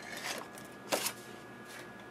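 Light handling of a hand-held craft punch and cardstock, with one short sharp tap about a second in.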